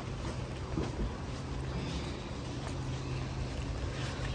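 Steady low background hum with faint rustling and small clicks from garlic cloves being peeled by hand, the papery skins crackling.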